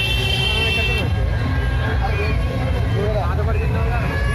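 Street procession crowd noise: many voices over a loud, steady low rumble from the idol-carrying trucks and the crowd, with a shrill high tone, like a whistle or horn, that stops about a second in.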